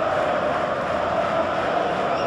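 Steady crowd noise: many voices blended into one continuous, unbroken din.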